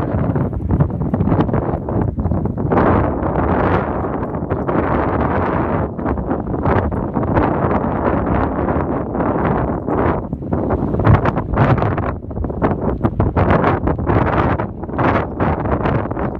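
Wind buffeting the microphone throughout, with scattered short rustling and crackling sounds on top.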